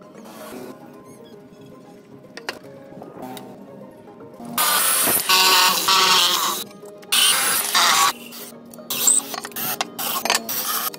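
Corded electric drill boring holes through plywood in three bursts of one to two seconds each, starting about halfway in. Light background music plays underneath.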